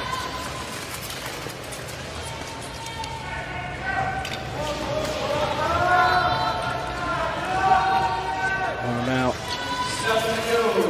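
A voice narrating in Korean from about three seconds in, over the arena sound of a short-track speed skating race with scattered knocks.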